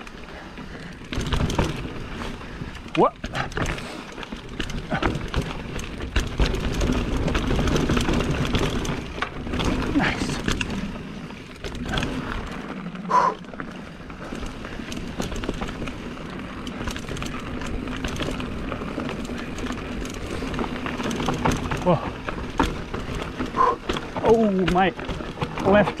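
Mountain bike rolling down dirt singletrack: tyres running over dirt and roots, with frequent knocks and rattles from the bike over rough ground.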